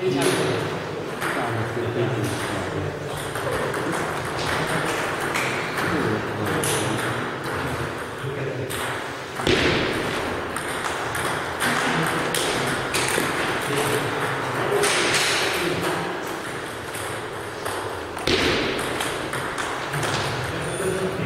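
Table tennis rallies: a celluloid ball clicking off rubber bats and the table top in quick back-and-forth exchanges, echoing in a gym hall, with short pauses between points.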